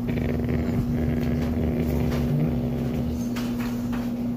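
Black Labrador growling low, a rough rumble lasting about three seconds that stops shortly before the end, over a steady electrical hum.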